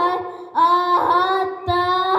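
A boy singing a Sakha toyuk in a high voice, holding long notes. A note ends just after the start, and after a short breath a new note slides up into place; another brief break comes near the end.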